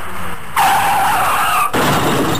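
Cartoon sound effect of a car's tyres screeching as it skids, starting about half a second in and lasting about a second. It is followed near the end by a loud, noisy crash as the car hits a tree.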